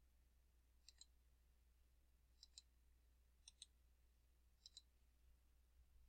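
Near silence broken by four faint pairs of quick clicks, spaced a second or so apart: computer mouse double-clicks.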